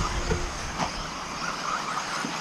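4wd radio-controlled buggies running around a dirt track, heard as a steady noisy hiss with no clear motor pitch.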